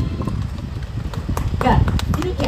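A woman's voice over a stage sound system, broken by a string of irregular sharp knocks.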